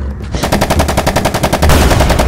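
A long burst of rapid automatic gunfire starts about half a second in, with a steady low rumble beneath it.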